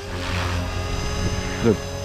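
Blade Fusion 360 3S electric RC helicopter in flight: steady high whine of its electric motor with whooshing rotor noise.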